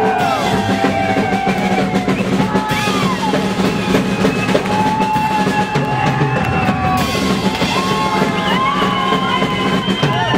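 Live rock and roll band playing: acoustic guitar, upright double bass and a drum kit driving a steady beat.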